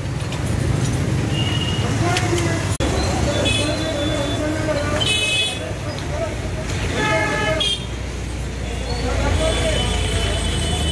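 Street ambience of several people talking and calling out over a low, steady traffic rumble, with a short vehicle horn toot about seven seconds in.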